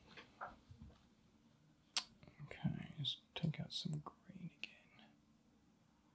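A man's voice speaking low and indistinctly under his breath, with a sharp click about two seconds in.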